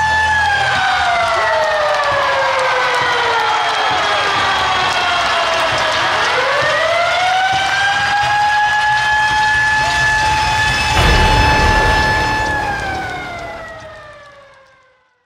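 A siren wailing: its tone slides down in pitch over about six seconds, winds back up and holds, then slides down again and fades out near the end. A deep rumble joins about eleven seconds in.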